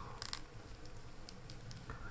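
Faint handling sounds: gloved fingers rustling and clicking softly against a plastic action figure as a hairpiece is fitted onto its head, with a couple of small clicks near the start.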